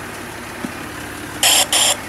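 A food-waste collection truck's engine idling steadily, then two short, loud hisses in quick succession about a second and a half in.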